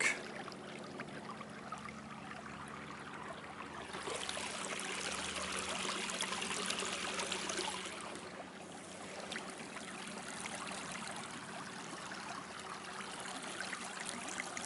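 Water rushing and trickling along the hull of a canoe moving under a 34-lb-thrust electric trolling motor, with a faint steady low hum underneath. The rush of water grows louder for a few seconds about a third of the way in, then settles.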